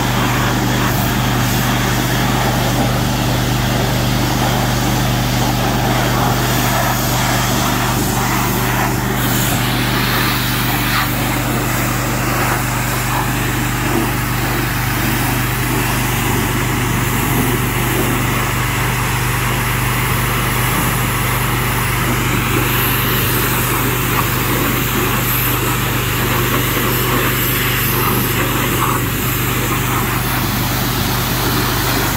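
Gas-engine pressure washer running steadily, with the hiss of its high-pressure water spray striking a lawn mower.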